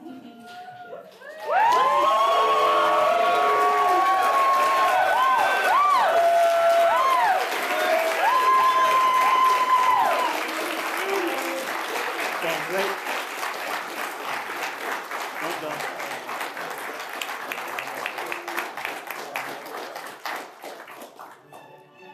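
Wedding guests break into applause and cheering about a second and a half in, with loud whoops for the first several seconds. The clapping then carries on, slowly fading toward the end.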